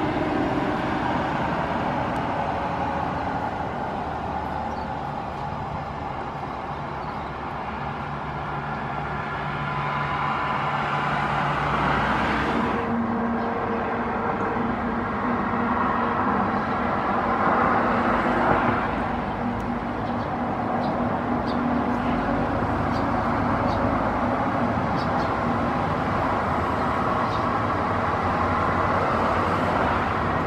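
Steady road traffic noise, with passing vehicles swelling and fading now and then. The background changes abruptly about a third of the way in.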